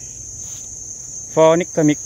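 Insects chirring: one steady, high-pitched, unbroken drone. A man's voice starts speaking over it about halfway through.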